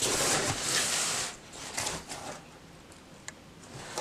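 Cardboard and packing material rustling and scraping as hands rummage in an open shipping box. It is loudest in the first second or so, then fainter, with a few light knocks.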